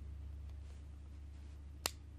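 One sharp click near the end: the power switch of a Nikon D3100 DSLR being flipped on.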